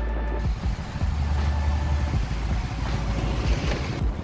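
Street traffic and motorbike road noise heard while riding, with a steady low rumble of wind on the microphone. Faint background music carries on over the first moment.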